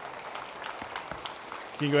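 Scattered applause and murmuring from a congregation, a steady even crowd noise, with a man's voice starting near the end.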